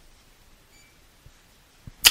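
A pause in speech: faint steady background hiss with a couple of small clicks near the end.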